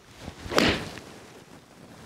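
Golf club swung through the air in a full swing, one swish that swells and peaks about half a second in.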